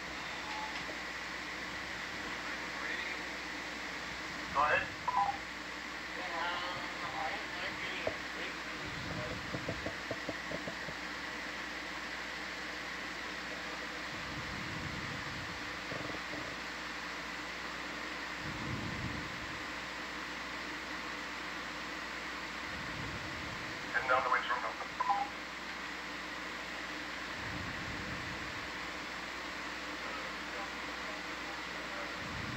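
Steady electronic hum and hiss of a ship's ROV control-room audio feed, with a faint high whine. Brief, unintelligible voice chatter comes through twice, and a quick run of short pips sounds about ten seconds in.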